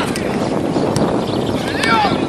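Wind noise on the microphone over distant shouting from footballers on the pitch, with a shout near the end and a few faint clicks.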